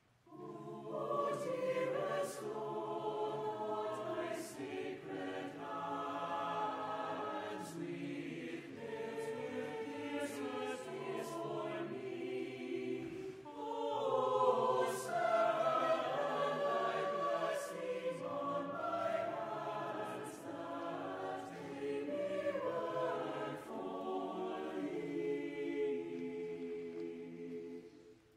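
A choir singing in several parts, starting about half a second in, with a short pause for breath about halfway through.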